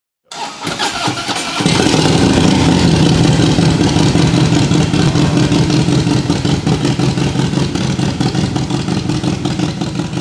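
Harley-Davidson Breakout's V-twin, fitted with a 120R race motor and Vance & Hines exhaust, starting up: it turns over briefly, catches about a second and a half in, then runs loud and steady.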